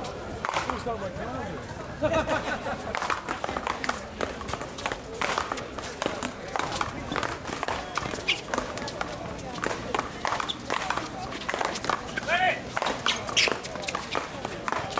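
Paddleball rally: repeated sharp knocks of solid paddles striking the ball and the ball hitting the wall, with players' footsteps, under voices talking in the background.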